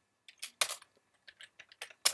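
Computer keyboard keystrokes while typing code: a handful of irregular sharp key clicks, the loudest about half a second in, then several lighter taps.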